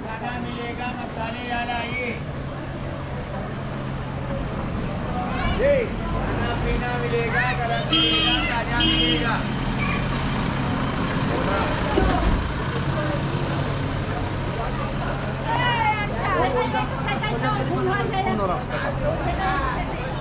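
A vehicle engine idling steadily close by, with scattered voices of passers-by over it.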